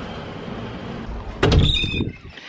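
Camera handling noise: a steady low hum, then about one and a half seconds in a loud burst of rubbing and knocking as the camera is picked up and carried, with a brief high squeak.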